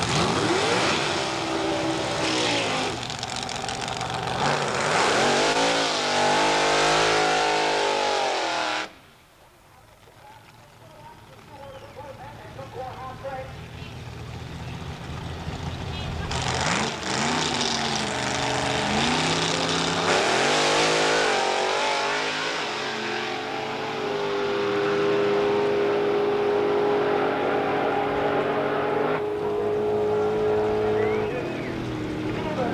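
Drag-racing doorslammer V8 engines revving hard in rising and falling sweeps. The sound cuts off abruptly about nine seconds in. After a quieter stretch the engines rev up again around seventeen seconds, and from about twenty-four seconds they hold one steady pitch.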